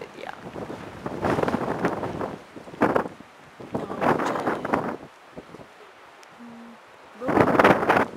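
Wind buffeting the camera microphone in uneven gusts, the loudest near the end, with quieter lulls between.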